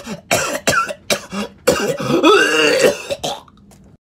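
A man coughing and clearing his throat in a quick run of short hacks, then a longer drawn-out vocal sound with wavering pitch about halfway through. The sound cuts off suddenly just before the end.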